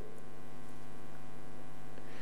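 Steady electrical mains hum, a low drone with many even overtones.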